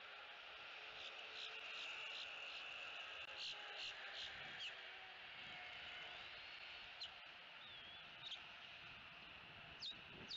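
Faint outdoor ambience: a steady high insect drone with scattered short, high bird chirps, clustered in the middle, and a few thin whistled glides later on.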